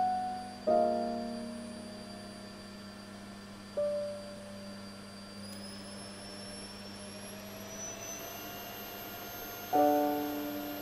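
Piano chords struck and left to ring, with a single note in between, over the steady hum and high whine of a running vacuum cleaner. From about halfway through, the vacuum's whine climbs gradually in pitch and then holds, as the control on its handle is worked.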